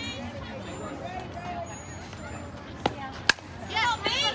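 Background chatter from spectators, then a sharp crack of a softball bat hitting the pitched ball a little over three seconds in, just after a smaller click. Spectators break into loud cheering and shouting right after the hit, near the end.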